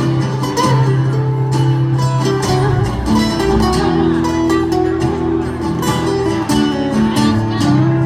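Acoustic guitars playing together live in an instrumental passage, with picked notes ringing over sustained low notes.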